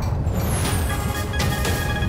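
Closing sting of a TV news bulletin's theme music: a heavy, low rumbling swell with whooshing sweeps and two sharp hits, the first about two-thirds of a second in.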